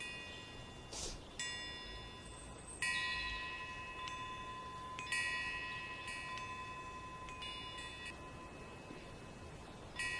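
Faint chimes ringing: clusters of high, bell-like tones that come in about four times, at roughly one to two second intervals, then stop a couple of seconds before the end.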